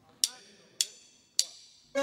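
Three sharp hand claps, evenly spaced a little over half a second apart, counting in a flamenco-rumba song. A sustained pitched note enters at the very end as the band starts playing.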